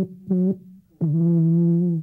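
A 47-metre wooden alphorn, the world's longest, being played. It gives two short notes, then a longer, slightly lower note held from about a second in.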